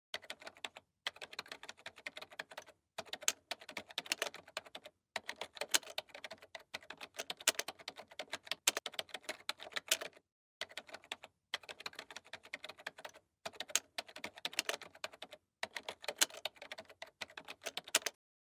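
Typing sound effect: rapid keystroke clicks in runs lasting from under a second to about five seconds, broken by short pauses, stopping abruptly at the end.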